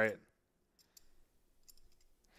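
A voice finishes a word, then near silence broken by a few faint clicks about a second in and again near the end.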